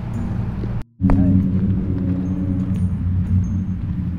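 Steady low rumble of wind and handling noise on a handheld camera's microphone, broken by a sudden brief dropout about a second in.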